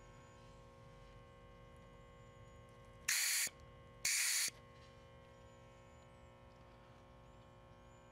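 Two short hisses of R-22 refrigerant released from a heat pump's suction-line service port as a quick-check acid test tube is pressed onto it, about a second apart, over a faint steady hum. The refrigerant carries compressor oil through the test tube to check the system for acid contamination.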